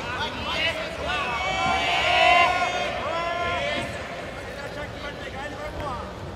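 Raised voices shouting in a large hall over the background chatter of a crowd, loudest about two seconds in and easing off after about four seconds.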